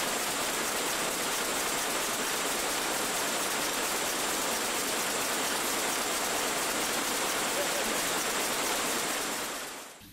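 A steady, even hiss with no rhythmic clatter, fading in at the start and out just before the end.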